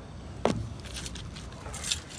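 A single sharp clack about half a second in from the handle of a Valterra Bladex waste-water valve under the truck, then keys jingling briefly near the end, over a low steady rumble.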